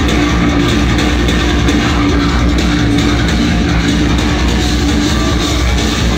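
A tech-metal band playing live and loud: distorted electric guitars, bass and drum kit in a dense, unbroken wall of sound, with a vocalist shouting into the microphone.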